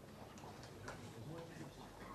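Quiet hall: faint murmur of voices in the room with a few light clicks and knocks.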